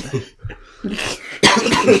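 A person coughing, with a few rough coughs in the second half.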